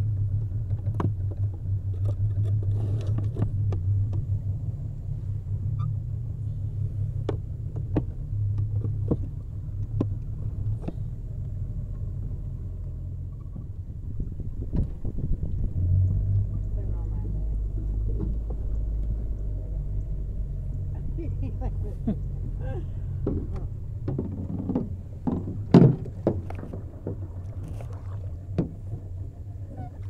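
Boat motor running with a low steady rumble, over scattered knocks and clatter from gear handled in an aluminum boat. A cluster of louder knocks comes about 25 seconds in.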